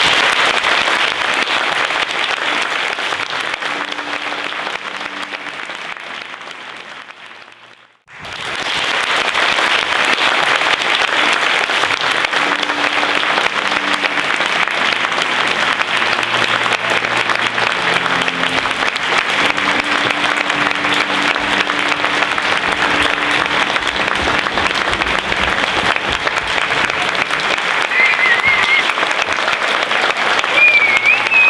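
Theatre audience applauding at the curtain call. The applause fades out about eight seconds in, then picks up again and holds steady, with a wavering high call near the end.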